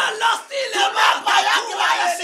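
Two men's loud raised voices, shouting and exclaiming excitedly.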